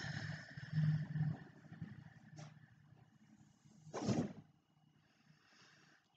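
A woman's slow, audible deep exhale, partly sighed with a low hum, fading out over about two seconds, then a short breath drawn in about four seconds in.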